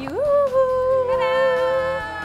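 A voice singing one long held note that slides up into it at the start, with a second voice joining on a higher note about a second in.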